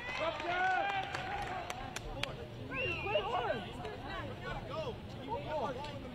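Several voices shouting and calling out over one another on a soccer pitch, short overlapping calls, with a single sharp knock about two seconds in.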